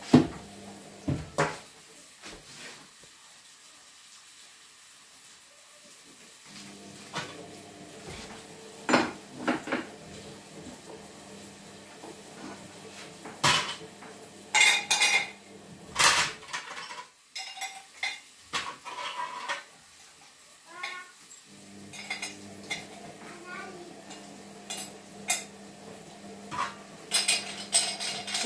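Metal parts of an electric meat grinder clinking and clanking as they are handled and fitted together: scattered sharp metallic knocks, with a cluster of them in the middle and more near the end.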